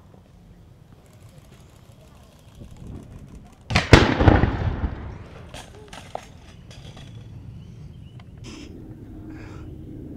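BMX bike and rider crashing off the top rail of a chain-link fence: one sudden loud metal impact about four seconds in, followed by clattering and rattling that dies away over about a second, then a few small knocks. The crash is hard enough to fold the bike's front wheel.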